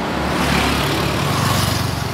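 A car passing close by on a paved road: engine hum and tyre noise swell to a peak about a second and a half in, then ease off.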